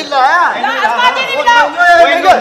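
Loud, excited speech from several voices talking over one another.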